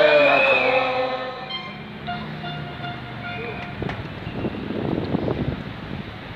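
A loud voice through a handheld megaphone holding a long shout or chant for about a second and a half, then fading into the general noise of a street march crowd.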